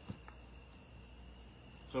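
Faint room tone in a pause between speech: a steady high-pitched whine at two pitches over a low hum, with a light tap just after the start as a Bible is handled.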